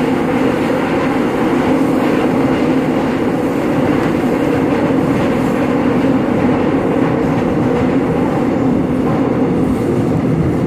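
Seoul subway train running, heard from inside the passenger car: a steady rumble with a low, even hum.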